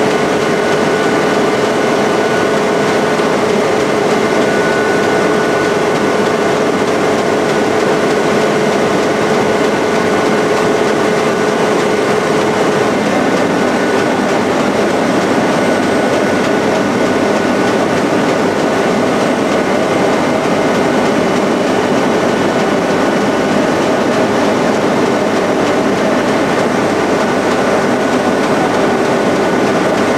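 Strecker sheeter running: a steady, loud machine noise with a constant high whine and a lower hum that drops back about halfway through.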